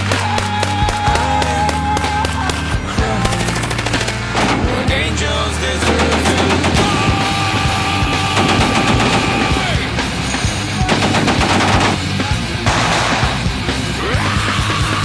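Rapid bursts of machine-gun fire over loud music with held notes.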